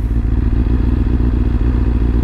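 Motorcycle engine idling steadily, a low even hum with a fine regular pulse.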